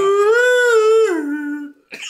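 A person's voice holding one long high note, like a drawn-out "ooh" or howl, dropping in pitch a little after a second in and fading out near the end.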